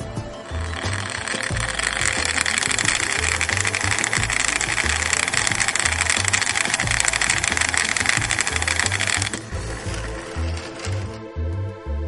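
Background music with a steady beat, over which the solar car's small DC motor and plastic drive gear whir steadily, spinning in sunlight. The whir is the loudest sound; it starts just under a second in and cuts off sharply about nine seconds in, leaving only the music.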